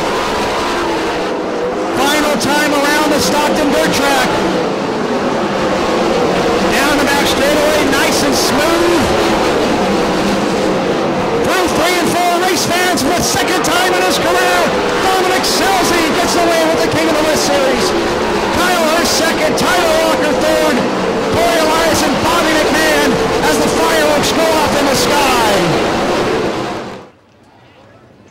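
A field of 410 winged sprint cars racing on a dirt oval, their V8 engines at high revs, with the pitch rising and falling as the cars throttle through the turns and pass. The sound cuts off abruptly near the end.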